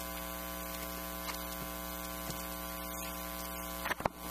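Steady electrical mains hum in the sound system, a buzz of evenly spaced steady tones over a faint hiss, with a few faint ticks and a short sharp noise just before the end.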